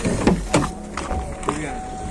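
A Chevrolet's front door latch clicking as the outside handle is pulled and the door swings open.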